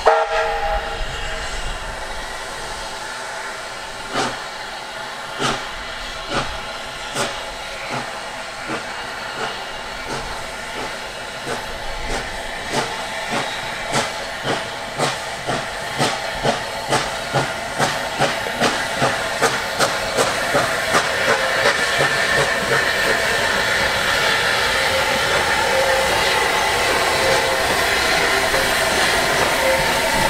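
Steam locomotive starting away: a short whistle at the very start, then exhaust chuffs that begin slow and widely spaced and quicken steadily until they run together, over the hiss of steam.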